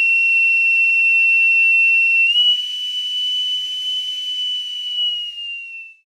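Boatswain's call (bosun's pipe) sounding one long, high whistled note. It steps up slightly in pitch a little over two seconds in, then slides down and fades out near the end.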